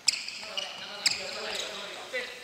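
Indoor futsal play on a wooden gym floor: two sharp ball strikes about a second apart, with sneakers squeaking on the floor and players' voices echoing in the hall.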